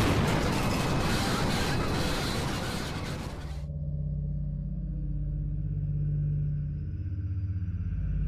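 A loud, dense roaring rumble, a dramatized sound effect of the shuttle coming apart, cuts off suddenly about three and a half seconds in. A low, held music drone is left.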